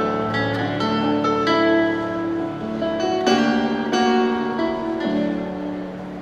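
Electronic keyboard playing a slow instrumental song intro: single notes and chords, each struck and dying away, with the chord changing every second or two. It thins out and gets a little softer near the end, before the vocal comes in.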